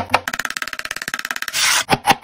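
Chef's knife chopping garlic cloves on a wooden cutting board: a fast, even run of blade strikes on the wood, then a short scrape of the knife across the board near the end.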